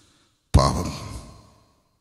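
A man's heavy, breathy sigh into a close microphone, starting suddenly about half a second in and trailing away over about a second.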